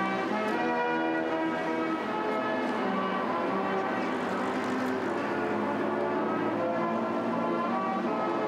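Military brass band playing a slow, solemn piece in long held chords.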